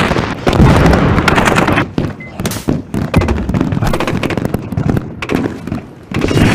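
Film sound mix of rapid, repeated gunfire, dense and loud for the first two seconds, then thinner, scattered shots.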